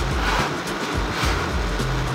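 Soft background music.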